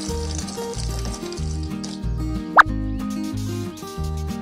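Background music with a steady, repeating beat. A single short, sharp click is heard about two and a half seconds in.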